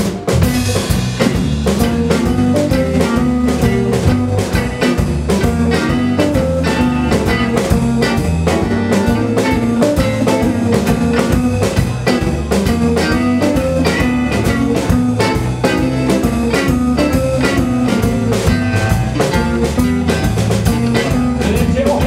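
Live blues band playing an instrumental groove on electric guitars, bass guitar and drum kit, with a steady beat; the band comes in together right at the start.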